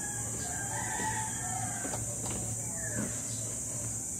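Chickens calling in the background, with a longer rooster-like crow about a second in and short falling calls near the end, over a steady high-pitched hiss and a few soft knocks.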